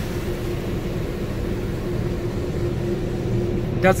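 Steady mechanical hum and rushing noise of car wash tunnel equipment, heard from inside the car's cabin.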